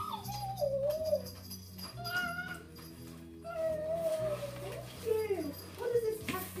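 A dog whining in long, wavering cries. The first slides down about a second in, and a longer one is held and then falls near the end.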